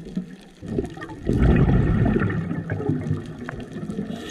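Scuba diver's exhaled bubbles rushing out of the regulator, heard through the camera's underwater housing. The burst starts a little over a second in and fades away, with faint scattered clicks throughout.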